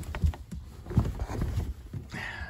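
Quilt being handled and draped over a PVC-pipe frame: rustling fabric and irregular soft bumps, with handling noise from the camera held close.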